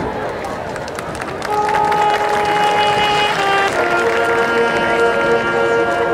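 Marching band music. A chord cuts off, leaving about a second and a half of crowd noise from the stands. Then a few instruments come in on long held notes, which grow into a sustained full-band chord about four seconds in.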